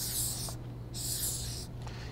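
Marker pen drawn across flip-chart paper in two strokes, each under a second, as an oval is drawn.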